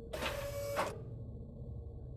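A short mechanical sound effect in an animated intro: a hissing burst with a steady tone inside it. It lasts under a second and ends sharply with a louder hit.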